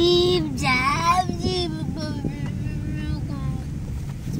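A high voice singing a few drawn-out, sliding notes, loudest in the first second or so and then trailing off. Under it runs the steady rumble of a car's engine and road noise heard from inside the cabin.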